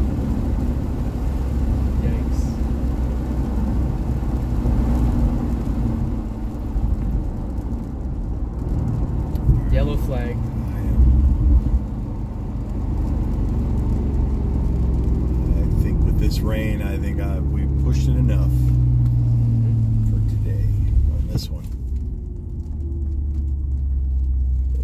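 Engine and road noise inside a Porsche's cabin, driving slowly on a wet track: a steady low rumble, with the engine note rising through the second half and dropping away near the end.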